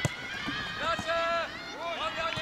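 High-pitched children's voices shouting and calling during a youth football game, with a sharp thud of the ball being kicked right at the start.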